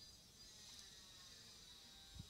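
Near silence: faint steady background hiss with a thin high-pitched tone, and no speech.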